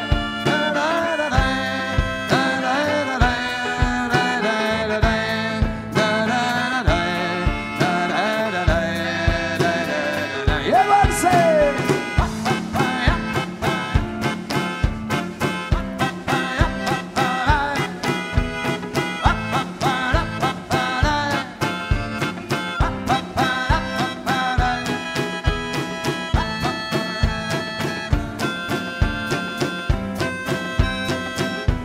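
A live band playing an instrumental passage of a French chanson: a drum kit keeping a steady beat of about two strokes a second under guitar and a lead melody, with one sliding note about eleven seconds in.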